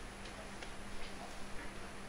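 Quiet room tone with a low steady hum and a few faint ticks.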